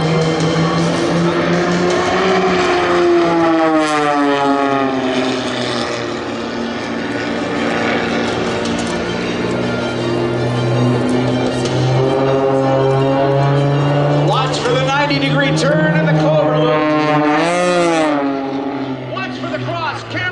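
Propeller aerobatic planes flying in formation overhead, their engines droning steadily, mixed with music and a singing voice from the public-address system; the sound drops a little near the end.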